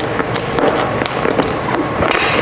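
Continuous scraping and crinkling as a plastic squeegee pushes wet paint protection film down over a car's side mirror, with many small clicks.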